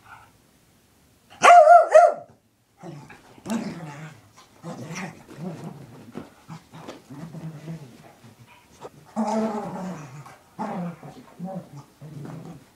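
A small dog, worked up after a bath, gives one loud, wavering bark about a second and a half in. It then growls and grunts playfully in short, repeated bouts while rolling and rubbing on a towel.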